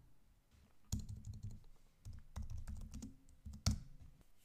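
Typing on a computer keyboard: a quick run of keystrokes starting about a second in, with one sharper stroke near the end.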